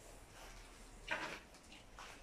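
One short scrape or crunch about a second in, over faint room tone.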